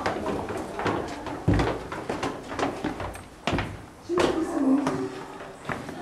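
Indistinct voices in a room with two heavy thumps, about one and a half and three and a half seconds in, and a brief held voice-like tone a little after four seconds.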